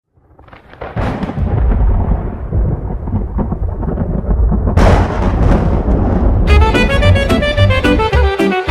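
Recorded thunder rumbling in, with a sharp loud crack about five seconds in. Instrumental music starts over it near the end.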